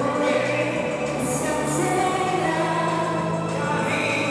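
Live singing into a microphone over amplified music, with long held sung notes.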